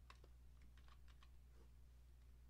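Faint clicks of computer keys, a quick irregular run in the first second and a half, over a steady low hum.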